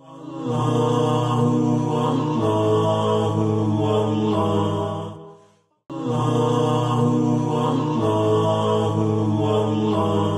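Programme bumper jingle: a wordless chanted melody of long held notes over a low drone. The same phrase of about five seconds plays twice, each time fading out, with a brief gap about halfway through.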